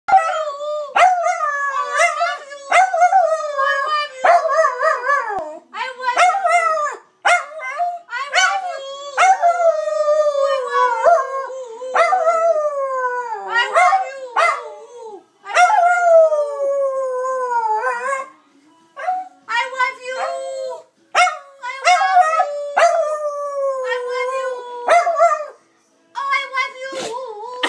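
Dachshund howling over and over, a string of short howls followed by long drawn-out howls that slide down in pitch over two or three seconds.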